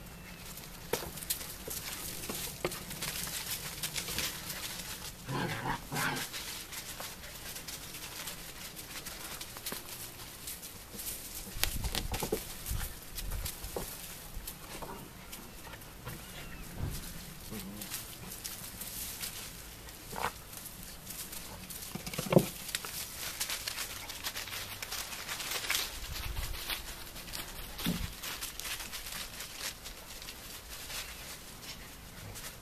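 Eight-week-old collie puppies playing, with a few short yips, the loudest about three-quarters of the way through, over steady small rustling and scrabbling of paws in dry leaves and sand.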